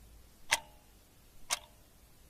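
Clock ticking, one sharp tick a second, each with a short ringing tone after it; two ticks.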